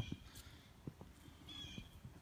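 Quiet outdoor background with a few faint, irregular footsteps, and a brief faint high chirp about one and a half seconds in.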